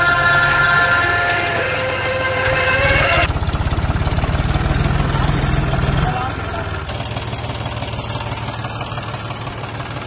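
Tractor engine idling close by, a steady low pulsing run that eases to a lower level about six seconds in. For the first three seconds or so a chanted song plays over it.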